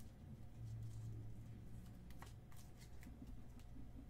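Sleeved trading cards and rigid plastic top loaders being handled and stacked on a table: a few faint, scattered clicks and slides, over a low steady hum.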